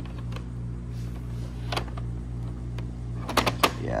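Hard plastic graded-card slabs clicking against each other as a stack is handled and flipped through: a few scattered clicks, then a quick cluster near the end, over a steady low hum.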